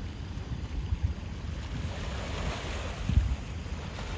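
Wind buffeting the microphone in gusts over the wash of sea water, with a louder rush of water about two seconds in.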